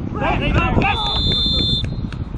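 Shouts from players, then a whistle blown once: a steady shrill tone a little under a second long. Wind rumble on the microphone underneath.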